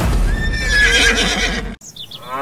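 A horse whinnying: one long wavering call over a dense rumbling noise, starting suddenly and cutting off abruptly near the end.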